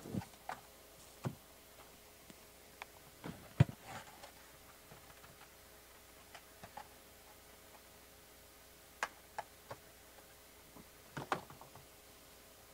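Foil-wrapped trading card packs being lifted out of a cardboard hobby box and set down on a playmat: scattered light taps and clicks, in small clusters, the sharpest one about three and a half seconds in.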